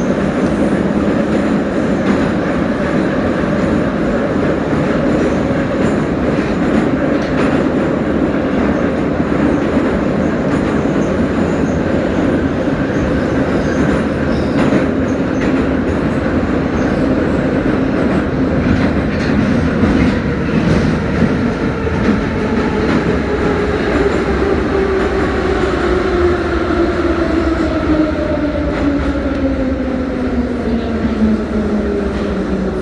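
Moscow Metro train running through a tunnel, heard from inside the car: a steady loud rumble of wheels on rails. From about two-thirds of the way in, a whine falls steadily in pitch as the train slows into a station.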